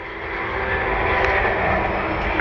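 Distant engine drone, rising a little in the first second and then holding steady.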